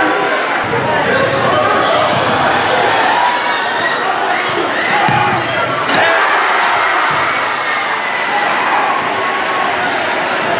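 Live basketball game sound in a large gym: a ball dribbling on the hardwood floor under a constant mix of crowd and player voices. There is a sharp slam just before six seconds in, as a player dunks on the rim.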